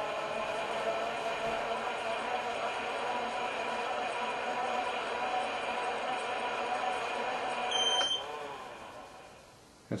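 Motorized skein winder's motor drive running steadily with a whine as the swift turns. About eight seconds in a short electronic beep sounds and the motor cuts off and winds down: the rotation counter has reached its 20-rotation target and shut the unit down.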